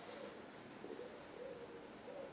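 Quiet: a brief, faint rustle of hands smoothing a crocheted cotton shawl flat on a table near the start, with a few faint, soft hoot-like tones in the background.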